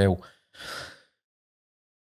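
A man's short audible in-breath at the microphone, about half a second in, just after the tail of a spoken word.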